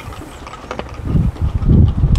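Wind buffeting the microphone in uneven low rumbling gusts that grow stronger about a second in, with a few faint clicks.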